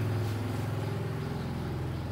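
A steady low motor hum, loudest at the start and easing slightly.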